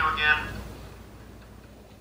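A cartoon voice from the played clip trails off in the first half second, leaving a low, steady hum and faint hiss.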